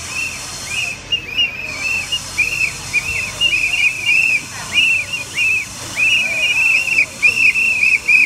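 A crowd of marchers blowing yellow plastic whistles: many short, high-pitched blasts overlapping, several a second.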